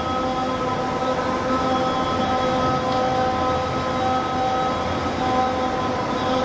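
A steady droning hum over a hiss, holding one pitch throughout, with its tones briefly dropping out a couple of times.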